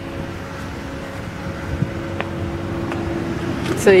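Steady hum of a car running, with a sharp click about two seconds in.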